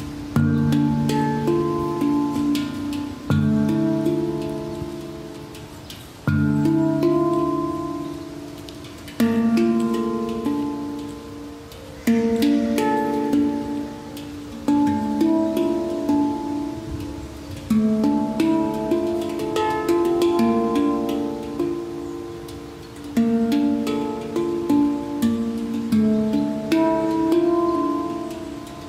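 Handpan played by hand: struck steel notes that ring on with long sustain, a deep low note sounding about every three seconds beneath a melody of higher notes.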